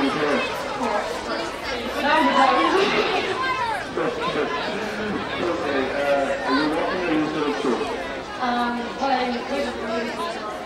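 A man speaking into a hand-held microphone, with chatter in the background.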